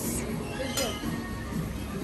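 A metal spoon clinking lightly against a ceramic bowl and plate as rice is scooped and served, with a couple of short clinks over faint background music.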